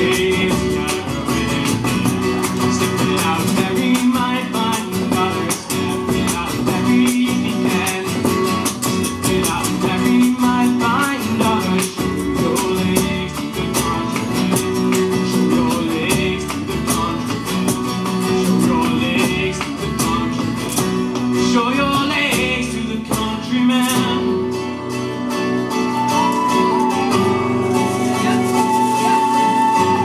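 Live Irish folk band playing an instrumental passage: strummed acoustic guitars, upright bass and a driving bodhrán beat. A high whistle melody with long held notes rises above them near the end.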